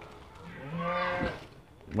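Garut sheep bleating once: a single drawn-out call about a second long.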